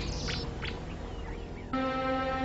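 A few faint, short bird chirps over soft background music. A sustained music chord comes in near the end.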